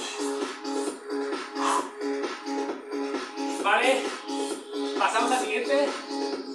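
Background electronic dance music with a steady, fast repeating beat, with a short voice phrase heard twice near the middle and end.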